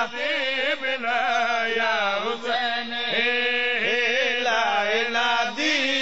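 A man's voice chanting a devotional qasida in long, wavering held notes, with short breaths between phrases.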